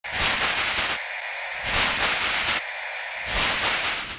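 Glitch-style static noise from an intro sound effect: three loud bursts of hiss, about a second each, alternating with thinner, band-filtered stretches of the same noise.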